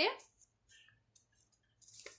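Faint crinkling and clicking of a folded paper slip being unfolded by hand, with a few sharper clicks near the end. A woman's voice trails off at the very start.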